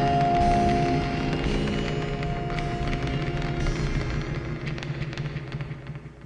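Harsh, distorted noise music with several held droning tones and scattered clicks, fading out steadily toward the end.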